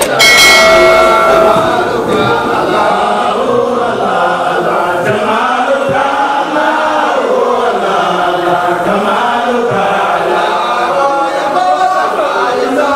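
A group of men chanting together, a devotional chant in the manner of a Mawlid recitation in praise of the Prophet. It goes on without a break, loudest in the first second and a half.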